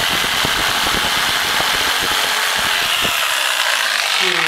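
Corded electric jigsaw cutting through a pine board: a loud, steady buzz of the motor with the blade rattling through the wood.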